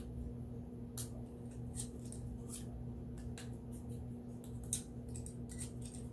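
Quick, irregular scratchy strokes of a cleaning tool scrubbing a dirty Glock 43X pistol part by hand, with a sharper tick about three-quarters of the way through, over a steady low hum.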